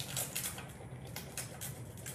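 A small stick rubbing a rub-on transfer onto a hollow plastic egg: a run of quick, faint, scratchy strokes over the transfer sheet.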